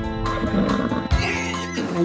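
A horse whinnying in the first half, over music with held chords.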